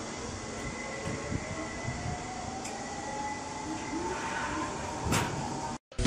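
Zipline trolley running along a steel cable, a faint whine rising slowly in pitch as the rider picks up speed, over steady rushing noise. A brief louder burst comes near the end, then the sound cuts off suddenly.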